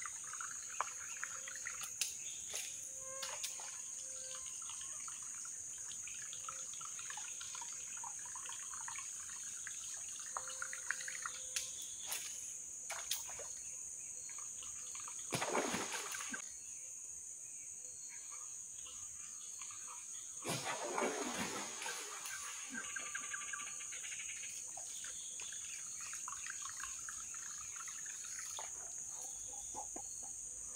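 Steady high-pitched drone of forest insects with scattered short bird chirps. About halfway through there is a splash on the creek, and a longer splashing follows about five seconds later.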